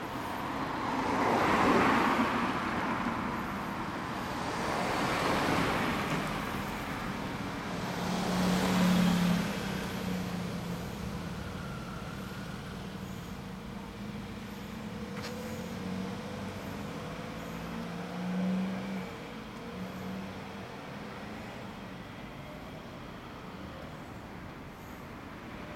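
Street traffic: three vehicles pass one after another in the first ten seconds, each rising and falling. After that comes a steady low engine hum of vehicles idling in a queue, with a short click about midway.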